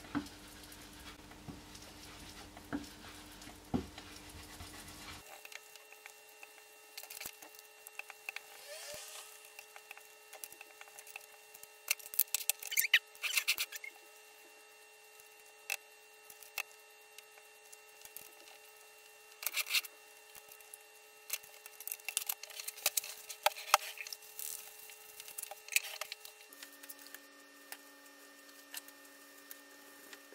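Ink blending tool dabbed on an ink pad and rubbed over cardstock: scratchy scrubbing in scattered bursts with quiet gaps, loudest around the middle.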